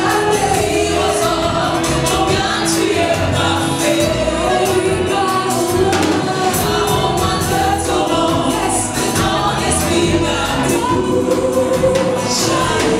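Live gospel song: two women singing into microphones over a band with bass and a steady drum beat.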